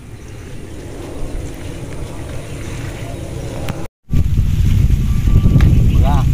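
Wind buffeting the microphone: a steady low rumble that slowly grows, cuts out for a moment about four seconds in, then comes back louder.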